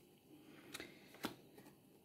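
Faint handling of Yaguel Didier divination cards: cards slid off the deck from hand to hand, with two soft card flicks about a second apart.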